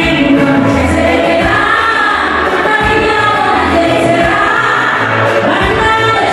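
A woman singing into a microphone over a live band, with a pulsing bass line under the melody.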